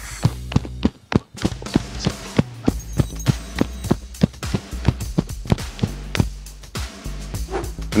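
Background music with a steady beat, over a fast run of short thuds, about four a second, from feet landing on grass during high-knee running in place.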